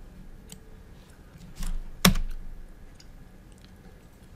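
Clicking at a computer keyboard and mouse: a few light clicks, a short rustle, then one sharp, loud click about two seconds in.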